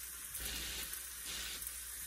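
Sliced mushrooms and veal frying in oil in a large pot, giving a steady sizzle with a few light crackles.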